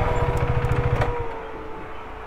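KTM RC 390 single-cylinder motorcycle engine running on the move, a steady whine over its low firing pulse. About a second in the engine quietens, and the whine slowly falls in pitch as it slows.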